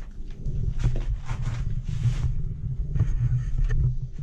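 Handling noise on a body-worn camera's microphone: an uneven low rumble with scattered rustles and soft clicks.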